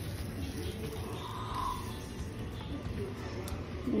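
Faint background music over a low steady hum.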